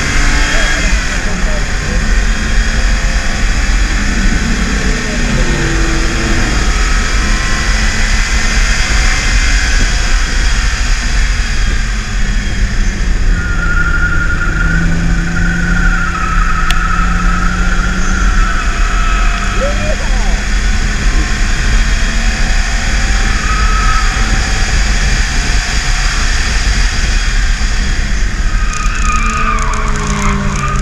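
BMW E36 328is's 2.8-litre straight-six pulling under acceleration on track, heard from inside the cabin over loud road and wind noise. A wavering high squeal from the tyres cornering comes and goes in the middle.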